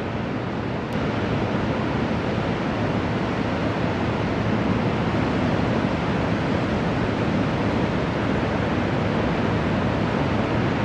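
Steady rushing roar of ocean surf breaking, a little louder from about a second in.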